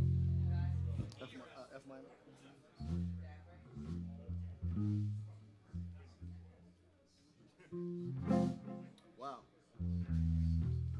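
Electric bass guitar playing separate, held low notes with pauses between them, with a few light electric guitar plucks, while the band gets ready to start a song rather than playing it in full.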